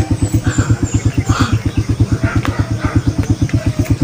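A small engine running steadily, with an even, rapid chugging pulse of about ten beats a second.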